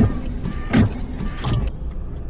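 Sound effects for a walking CGI robot: three heavy mechanical thuds about three-quarters of a second apart, its footsteps, over a steady low mechanical hum.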